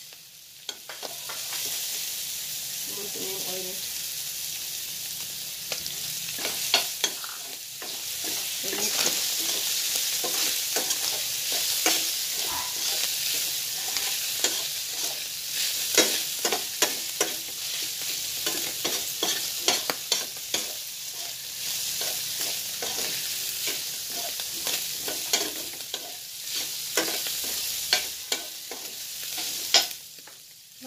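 Minced beef, red onion, garlic and chili sizzling in oil in a stainless steel frying pan, with a metal spoon scraping and clicking against the pan as it is stirred. The sizzle swells about a second in and then holds steady.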